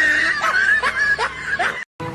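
A young man laughing in short, broken bursts that cut off suddenly near the end.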